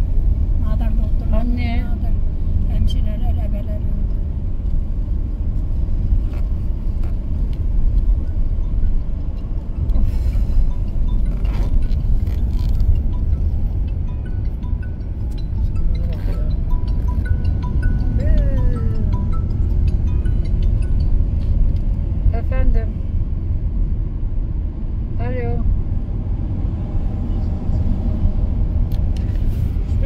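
Steady low drone of a Fiat Egea Cross on the move, heard from inside the cabin: road and tyre noise with its 1.6 Multijet diesel engine running under it. Faint music with a singing voice can be heard underneath now and then.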